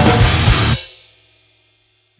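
Grindcore recording with drum kit and cymbals at full volume, stopping under a second in and dying away to silence.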